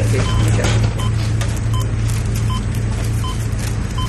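Medical patient monitor beeping at a regular pulse-like rate, a short tone about every three quarters of a second, over a steady low hum.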